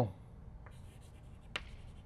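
Chalk writing on a blackboard: faint scratching strokes with a few short, sharp taps of the chalk, the clearest about one and a half seconds in.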